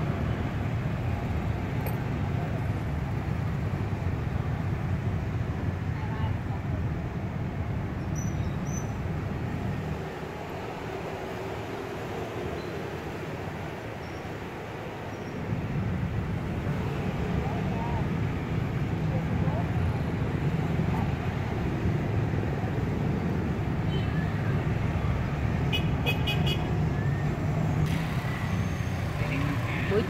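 Road traffic rumbling steadily, easing for a few seconds partway through and then picking up again, with a few short horn toots near the end.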